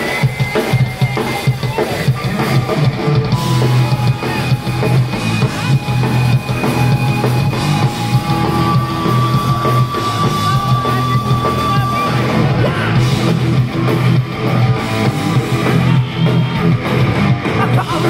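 Punk rock band playing live and loud: electric guitar, bass and drum kit, with no vocals, and a few long held guitar notes in the middle.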